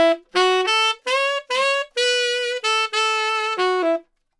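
Tenor saxophone playing a short rock-sax phrase of about ten separate notes, written F-sharp, G-sharp, B, D-sharp, D-sharp, C-sharp, B, B, G-sharp, F-sharp. The line climbs and falls back, with scoops up into two notes in the middle.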